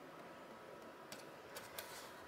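Near silence with a few faint light clicks in the second half, from the laptop's bottom cover being handled.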